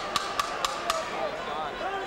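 Boxing timekeeper's ten-second warning: a wooden clapper rapped on the ring apron in a run of sharp knocks, about four a second, stopping about a second in. It signals ten seconds left in the round.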